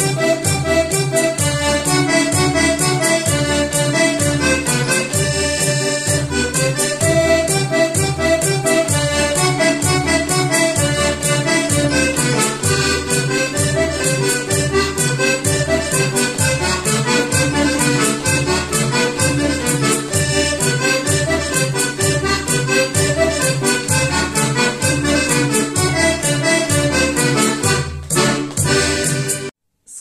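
Portuguese diatonic button accordion (concertina, a red Marzoli) playing a lively traditional march tune, the melody over a steady pulsing bass beat. The playing stops shortly before the end.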